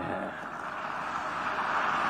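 Audience applauding, the clapping growing slowly louder.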